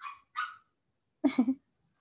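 A dog barking: two short high yaps, then a louder bark of three quick pulses about a second later.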